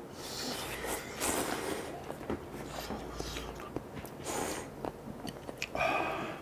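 Two people slurping instant ramen noodles loudly and chewing, with several hissy slurps, the longest about a second in and another near the end.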